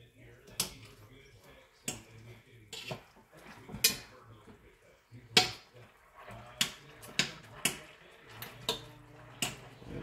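Metal fork clinking and scraping against a stainless steel frying pan as pieces of chicken are lifted and turned over: a string of sharp, irregular clinks, loudest about four and five and a half seconds in.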